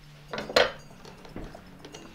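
A single brief clatter of a hard object, such as a measuring ruler being put down, about half a second in, over a faint steady hum.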